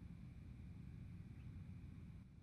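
Near silence: room tone with a faint, steady low rumble.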